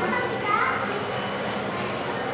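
Indistinct background chatter of several voices, with one higher voice rising briefly about half a second in.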